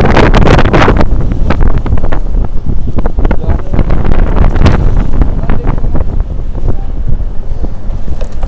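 Strong wind buffeting the microphone. It is loudest in a gust during the first second, then settles to a steady low rumble with scattered light knocks and clicks.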